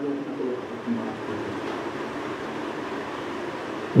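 Steady hiss of room noise picked up by an open handheld microphone, with a faint murmured voice in the first second.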